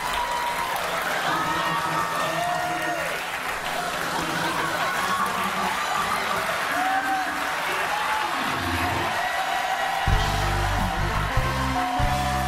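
Studio audience cheering and applauding, with scattered whoops. About ten seconds in, the house band starts playing with a heavy bass line.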